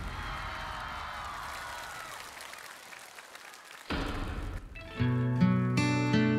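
Studio audience applause fading away. About four seconds in comes a brief rush of noise, and about a second later a guitar begins playing held chords as a song starts.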